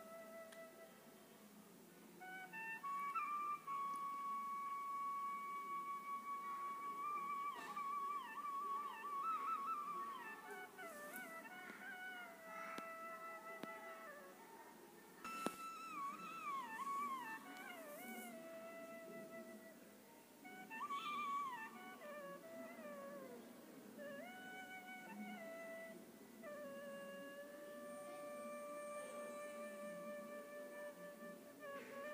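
Quiet instrumental background music: a single melody of long held notes joined by sliding, wavering ornaments.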